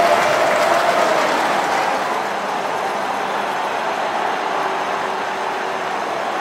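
Steady noise of a large crowd, loud and dense, easing slightly over the seconds.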